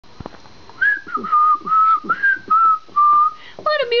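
A person whistling a short tune of about six notes, hopping between a higher and a lower pitch, then speech begins near the end.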